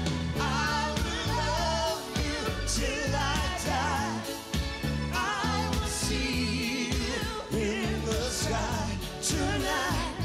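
Live concert recording of a pop duet: singing with vibrato over a full band with bass and drums.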